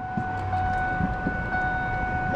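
A car's warning buzzer sounding as one steady, unbroken high tone while the key is at the ignition, with a few faint clicks underneath.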